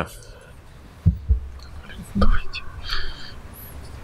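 Faint, low voices murmuring in a conference hall, with a few dull low thumps in the first half, like a microphone or chair being handled.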